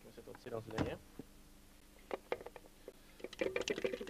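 A plastic colander of cloudberries being handled on a kitchen counter: a few light clicks, then a quick clattering rattle of plastic near the end.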